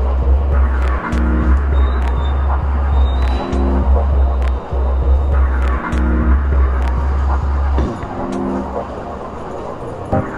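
Minimal dub-techno track: a deep sustained sub-bass, a short chord stab every couple of seconds, and light ticking percussion. The bass drops out about eight seconds in.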